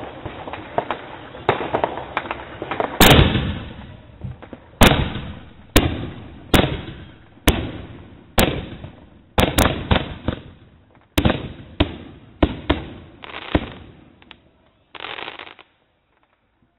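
Consumer aerial fireworks bursting overhead: a rapid crackle of small pops at first, then about a dozen sharp, loud bangs at irregular intervals of roughly a second, each trailing off in an echo.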